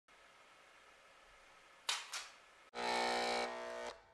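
Electronic intro sound effects: two sharp glitchy hits in quick succession halfway in, then a loud, buzzy electronic tone held for about a second, dropping in level just before it stops.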